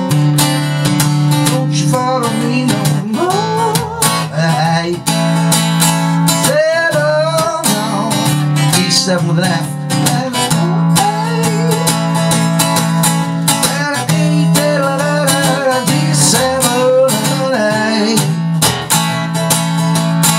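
Acoustic guitar strummed steadily through the verse of a blues-rock song, with a D7 chord fingered in a C7 shape and the E string left ringing.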